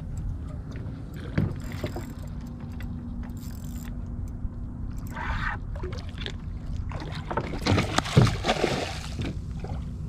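A boat's outboard motor runs steadily at low speed while water slaps against the hull. A hooked fish is fought at the side of the boat, with louder splashing near the end as it thrashes at the surface.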